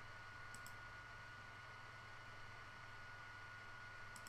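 Two quick computer mouse clicks about half a second in, over a faint steady high-pitched whine and low electrical hum.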